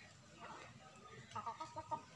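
Domestic chicken clucking: one short call about half a second in, then a quick run of clucks near the end.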